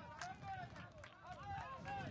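Several voices shouting and calling over one another on a football pitch: players calling during an attack on goal, with a few short knocks among the shouts.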